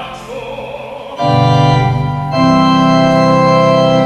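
A solo classical voice ends a sung phrase with vibrato. About a second in, an organ comes in with a loud held chord, then moves to a second held chord a little after two seconds.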